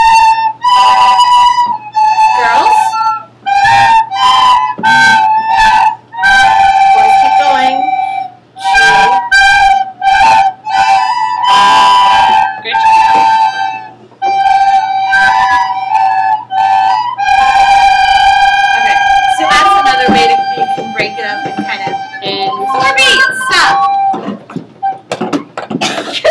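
A class of children playing recorders together, a simple tune of held notes on G, A and B in short phrases with brief gaps between them. Near the end the playing thins out and becomes ragged.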